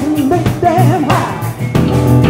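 Live funk band playing: a woman sings lead with vibrato over a Music Man StingRay electric bass, keyboard and drum kit.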